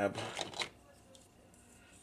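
Hard plastic toy parts clicking and rattling in the hands as a piece is picked up: a few quick clicks in the first half second, then quiet handling.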